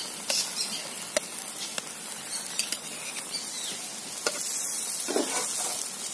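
Egg-topped tomato slices sizzling in very little oil in a blackened iron wok, with a metal spatula clicking and scraping against the pan a few times as the slices are lifted out.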